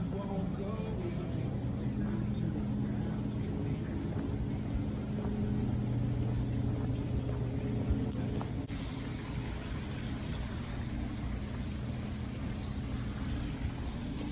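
A steady low machine hum, with faint voices near the start. A hiss comes in suddenly about two-thirds of the way through.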